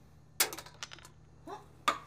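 Empty plastic medicine bottle tapped and shaken upside down over a palm: a quick run of sharp clicks about half a second in, a few lighter clicks after, and one more sharp click near the end. Nothing comes out: the bottle is empty.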